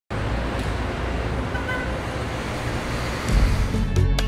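Steady street traffic noise with a brief tone about one and a half seconds in. Background music with a deep bass comes in shortly before the end.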